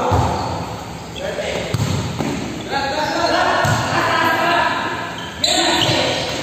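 Players shouting and calling during an indoor volleyball rally in a large, echoing gym, with several dull thuds of the volleyball being hit and landing, one of them a spike at the net near the end.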